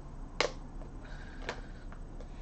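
Two sharp clicks of hard plastic, about a second apart, with a few fainter ticks near the end, as the parts of a small plastic desktop trash can are handled and fitted together.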